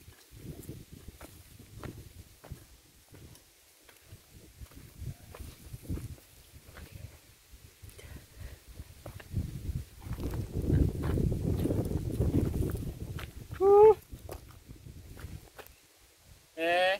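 Irregular thuds and scrapes of a hoe chopping into hard, dry earth. Louder scuffing footsteps come close about ten seconds in, and a short voiced call follows near the end.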